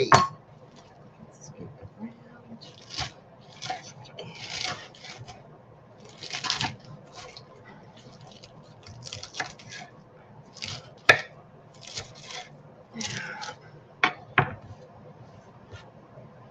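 Knife roughly chopping cabbage on a wooden chopping board: irregular strokes with the crunch of the leaves and a few sharper knocks of the blade on the board, between spells of hands pushing the shreds together.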